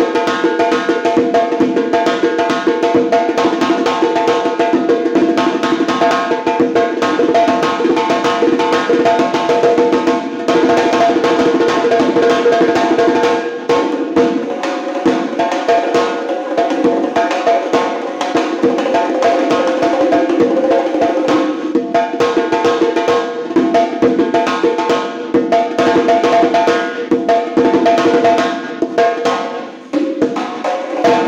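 Fast solo hand drumming on a dovul (large Uzbek drum), a dense stream of strokes that eases off briefly several times, over steady sustained pitched tones.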